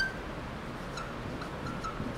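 Faint short squeaks of writing on the board: one at the start, one about a second in, and three more close together near the end, over low room hiss.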